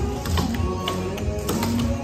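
Clogging shoe taps clicking on a plywood stage in quick clusters, dancing a hard loop step, over recorded dance music.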